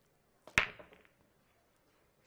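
A pool break shot in 8-ball: a light click of the cue tip on the cue ball, then a moment later a loud crack as the cue ball hits the racked balls, followed by a brief clatter of balls knocking together as the rack scatters.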